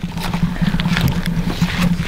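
Wind buffeting the camera microphone in gusts: a loud, rough rumble and hiss with no let-up.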